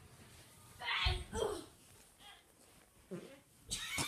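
Boys grunting and squealing while wrestling on a carpeted floor, with a deep low sound about a second in and a shrill cry near the end.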